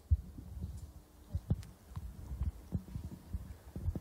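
Faint, irregular low thuds with a few light clicks: handling noise and footfalls picked up by a handheld microphone carried while walking.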